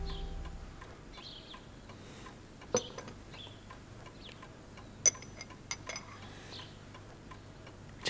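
Music fades out at the start, leaving a quiet room with faint steady ticking and a few sharp clicks, the loudest about three and five seconds in.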